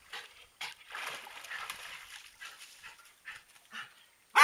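A wet dog climbing out of a swimming pool: faint, irregular splashing and dripping water, heard as a string of short soft noisy sounds.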